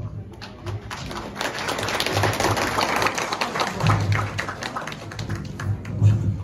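An audience clapping: a dense patter of many hands that builds about a second in and keeps going for several seconds, with a man's voice briefly over it.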